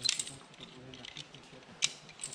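Metal rope-rescue hardware, carabiners and clamps on harnesses, clinking against each other: a quick cluster of clinks at the start and one sharp clink near the end.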